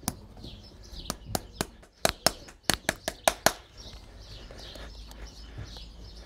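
A farrier's hammer tapping on a steel horseshoe at a horse's hoof: a run of about a dozen sharp metallic taps, quickest and loudest in the middle, about three a second.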